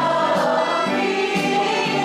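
A woman's voice leading a song, with other voices singing along and instrumental accompaniment underneath.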